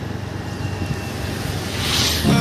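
Steady road and engine noise heard inside a moving car: a low rumble under a haze of tyre and wind noise. A hiss swells near the end.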